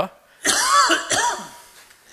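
A man coughing: one harsh, throaty cough about half a second in, trailing off over the next second.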